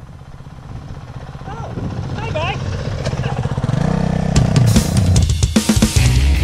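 Dual-sport motorcycle engine approaching along a dirt track, growing steadily louder as it nears. Music comes back in just before the end.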